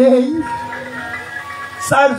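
A man's voice holds one long sung note, bending slightly at the start, over a faint steady instrumental drone. Near the end a new loud vocal phrase begins.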